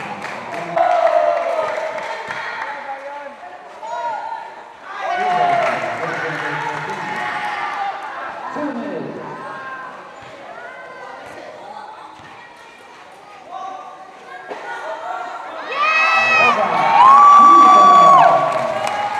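Spectators and players at a basketball game shouting and calling out over one another, rising to a loud burst of sustained shouting near the end.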